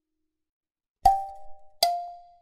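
Omnisphere software-synth layer playing a melody on its own. After a second of silence come two notes, each sharply struck and fading, the second a little lower than the first.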